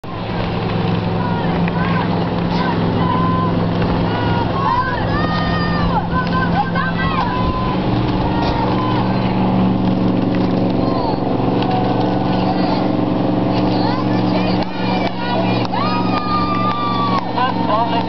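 Outboard motors of motor launches running with a steady drone whose pitch shifts about eight seconds in, under many voices shouting calls and encouragement to the rowers.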